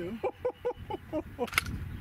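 A woman laughing in quick, short bursts, followed by a single sharp click about a second and a half in.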